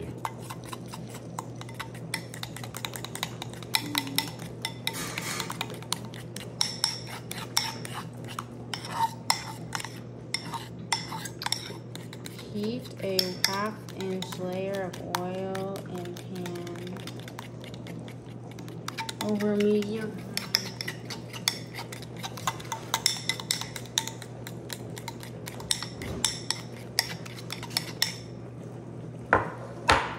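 A metal fork stirring a thick flour-and-cornstarch batter in a bowl, its tines clinking quickly against the bowl's side in uneven runs.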